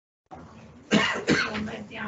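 Two coughs about half a second apart in a meeting room, the loudest sounds here, coming about a second in after the sound briefly drops out completely.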